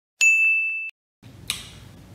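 A single high ding sound effect, one steady tone held for well under a second and cut off sharply, followed by faint room noise with a soft click.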